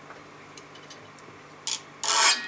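Quiet steady room hum, then near the end a short, sharp scrape as an object is rubbed across a table of small found objects.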